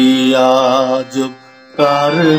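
Harmonium played a note at a time: a held reed note for about a second, with a voice singing the melody along in wavering pitch. Then comes a short break with a brief note, and a new note begins near the end.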